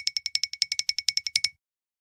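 A rapidly repeating high, bell-like ding sound effect, about a dozen strikes a second, dubbed over an otherwise silent soundtrack. It stops about a second and a half in.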